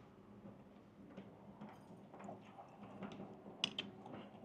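Faint chewing with small mouth clicks from someone eating a bite of grilled lamb skewer, close to a clip-on microphone, with a sharper click a little after three and a half seconds. A low steady hum runs underneath.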